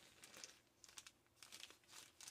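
Faint crinkling and rustling of gift wrapping paper being handled and opened, in short scattered crinkles.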